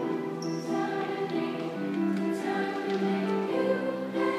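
Youth choir singing a pop song with accompanying music, in sustained held notes and chords that change every second or so.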